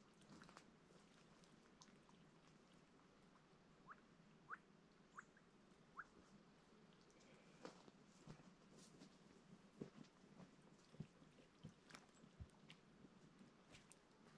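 Near silence: faint scattered ticks, with four soft, short rising chirps between about four and six seconds in.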